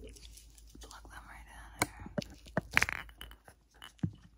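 Soft rustling close to the microphone, then a few sharp clicks and taps in the second half, the loudest a quick cluster about three seconds in.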